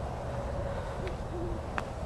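Two faint, short, low hoots in the second half, owl-like, over a steady low rumble.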